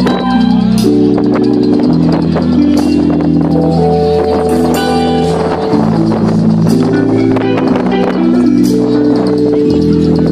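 Live reggae band playing through a large outdoor PA system: long held keyboard chords over a steady bass line, with drums and light percussion strokes keeping the beat.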